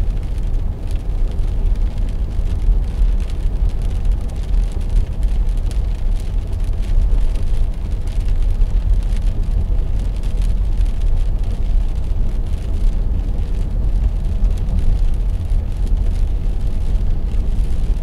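Steady low rumble of engine and tyre noise inside a car's cabin, cruising at highway speed, about 80 km/h, on a wet road.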